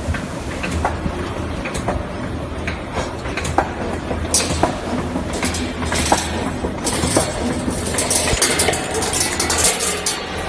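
2D CNC wire bending machine running: a steady low hum under irregular metallic clicks and clinks as the wire is fed through its straightening and feed rollers. From about four seconds in, the clicks come thicker, mixed with short bursts of hiss.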